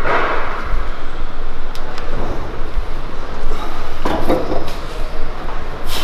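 Knocks and clunks from a plate-loaded shoulder press machine as its lever arms and 15 kg plates move under a set, heard over steady background noise.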